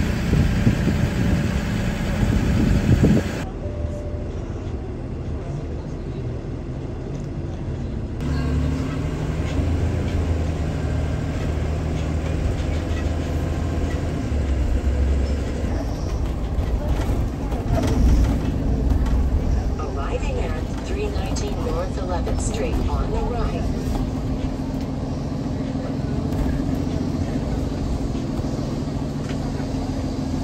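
A few seconds of city street noise, then a bus engine running with road noise heard from inside the cabin as it drives, a steady low rumble. Indistinct voices talk in the background.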